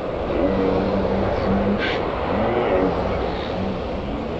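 Outdoor street noise with a steady low rumble of passing car traffic, and a man's voice talking indistinctly in short stretches over it.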